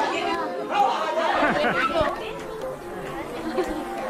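Many voices of children and adults chattering over one another in a large room, with no single speaker standing out.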